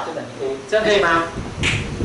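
Speech: a man talking in Mandarin.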